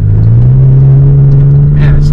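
Pickup truck engine heard from inside the cab, pulling under acceleration along a dirt trail, its steady drone slowly rising in pitch as the truck speeds up.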